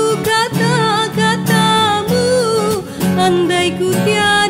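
A woman singing a Malay Aidilfitri (Eid) song with a wavering vibrato on held notes, over an acoustic guitar accompaniment.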